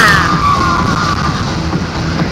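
Road and engine noise heard from inside a moving car, with music playing underneath. A falling tone fades out in the first second.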